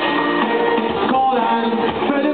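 Live band playing a song, with electric guitar.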